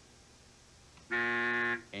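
Game-show buzzer sounding once, a steady buzz lasting under a second, starting about a second in: the signal of a wrong answer.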